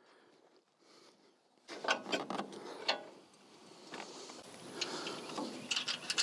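Small metallic clicks and rattles of bolts, washers and nuts being handled and fitted through the holes of a steel grill guard, coming in after a near-silent first two seconds.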